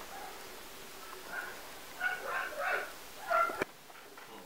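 A dog giving a run of short, high-pitched yelps, about five in the second half, cut off suddenly near the end.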